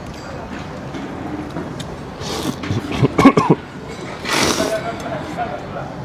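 Mouth sounds of a man eating beef noodles: two short breathy bursts, about two and four seconds in, with a brief murmur and a few clicks between them, over low steady background noise.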